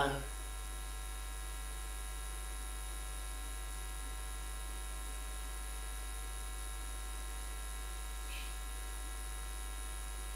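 Steady low electrical mains hum, with faint constant tones above it and no other sound.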